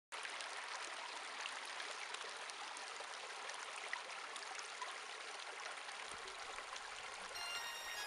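Shallow stream running steadily over rocks and stones. Near the end, faint guitar tones begin to come in.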